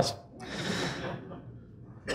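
A man's inhaled breath, a soft hiss lasting about a second that fades away.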